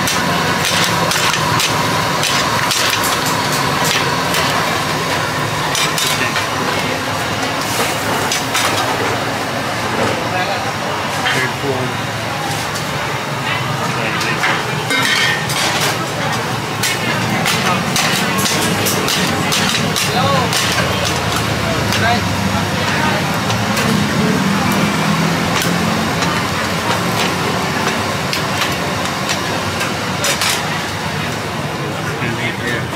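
Busy street-food stall ambience: a steady din of crowd chatter and passing traffic, with frequent sharp metal clinks of ladles against pans, thickest in the first ten seconds or so.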